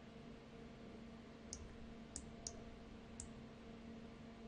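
Four faint computer mouse clicks over a low steady hum.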